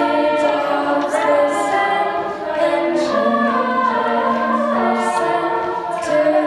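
A mixed a cappella vocal group singing in harmony into microphones, with held chords that change every second or so.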